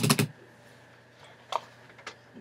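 A quick cluster of sharp clicks and knocks right at the start, then a quiet steady hum with one more single click about a second and a half in.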